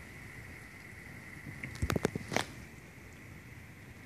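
Faint, steady hiss of rain, broken about two seconds in by a quick cluster of sharp clicks and knocks from the handheld camera being moved.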